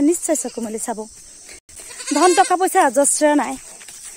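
Goats bleating in wavering calls, mixed with a woman talking.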